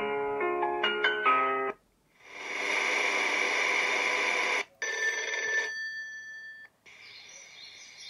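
Built-in alarm sounds of an Exlush sunrise alarm clock, played through its small speaker as they are previewed one after another. First a short electronic melody of stepping notes, then after a brief gap a louder, noisier alarm sound for about two and a half seconds, then shorter, quieter sounds.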